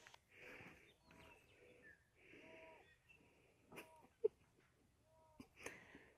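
Faint breathy snuffling, three times about two and a half seconds apart: a horse sniffing and blowing at a man's head. A single sharp click comes a little after four seconds in.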